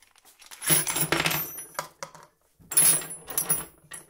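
Steel drill bits tipped out of a plastic cup and clattering onto a tabletop, with a thin metallic ring. There are two spells of rattling, the second starting about two and a half seconds in.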